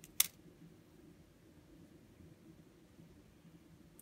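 A single short, sharp click a moment after the start, then faint, steady room tone.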